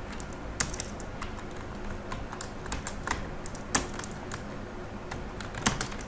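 Typing on a computer keyboard: irregular key clicks, a few sharper than the rest, over a faint steady background hum.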